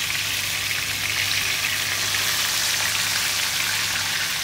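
Two whole tilapia shallow-frying in hot oil in a pan: a steady sizzle of oil bubbling around the fish.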